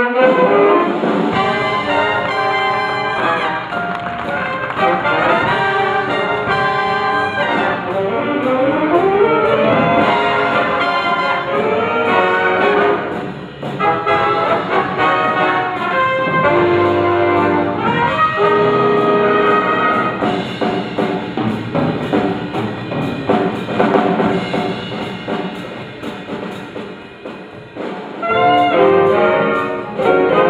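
Big band jazz: saxophones, trumpets and trombones playing together over piano, bass and drums. The band drops to a softer passage shortly before the end, then comes back in at full volume.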